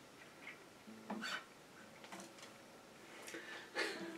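Faint scattered clicks and rustles from an acoustic guitar being handled, over quiet room tone, with the sharpest click near the end.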